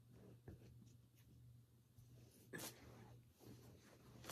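Near silence: a low steady hum with faint rustling, as of handling items, and one brief louder rustle or breath about two and a half seconds in.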